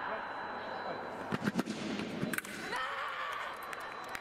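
Sabre fencing exchange: sharp metallic clicks and knocks of blades meeting and feet striking the piste, in a quick cluster a little over a second in and another about two seconds in, over the murmur of voices in the hall.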